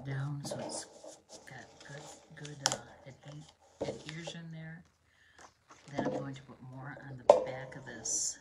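A person's voice talking, with two sharp clicks, one about a third of the way in and one near the end, as card stock is handled.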